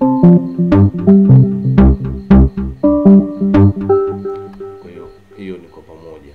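A programmed beat playing back from FL Studio: piano-like keyboard notes over deep low thuds in a steady pattern. It stops about four and a half seconds in.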